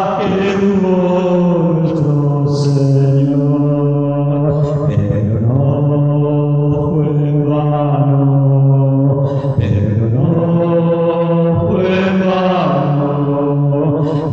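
A man singing a hymn unaccompanied in long drawn-out notes, each held for a couple of seconds before stepping to a new pitch, giving a chant-like sound; the singer is an amateur.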